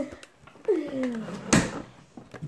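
A child's voice slides down in pitch, then a single sharp thump about a second and a half in.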